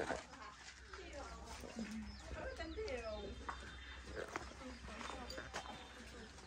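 Faint, indistinct voices in the background, with scattered vocal sounds but no clear words.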